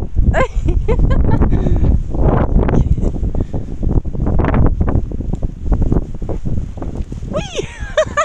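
Wind buffeting the microphone in a heavy, continuous low rumble, with brief human voice sounds just after the start and again near the end.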